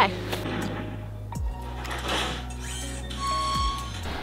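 Background music: a sustained deep bass line with two deep drum hits about two seconds apart, and a brief higher synth tone near the end.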